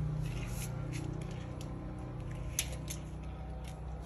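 A low steady hum with a few light, scattered clicks and rustles of handling close to the microphone.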